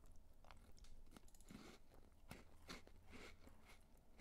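Faint, irregular small clicks and crunches close to the microphone, a few each second, over a low hum.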